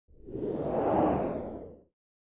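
Whoosh sound effect that swells up, peaks about a second in and fades away just before the logo settles.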